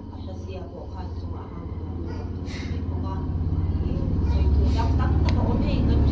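Low steady rumble that grows steadily louder, under faint, indistinct voices, with a couple of brief clicks.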